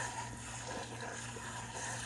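Water running steadily from a kitchen sink's pull-out sprayer onto frozen mixed vegetables in a metal colander, an even hiss.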